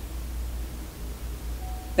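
A pause in speech: steady low hum with a faint hiss of room tone.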